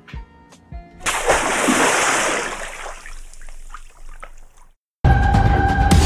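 A water-splash sound effect starts about a second in and fades away over about three seconds. After a brief gap of silence, loud music cuts in near the end.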